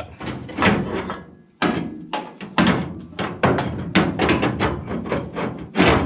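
Irregular metal clanks and knocks, a dozen or so sharp strikes, as a brake pedal shaft is worked by hand into its mounting bracket.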